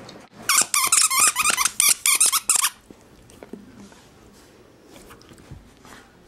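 Dog's squeaky toy squeaked rapidly many times over about two seconds, then faint mouthing sounds.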